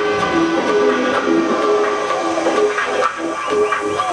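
Electronic dance music from a DJ set playing loud over a club sound system: a repeating riff of short synth notes over held tones, with swooping glides coming in near the end.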